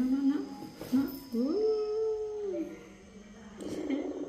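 A voice making drawn-out sing-song cooing notes: a couple of short notes, then a longer one about a second in that glides up, holds and falls away.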